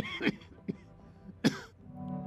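A man coughing: one cough at the start and another about a second and a half later.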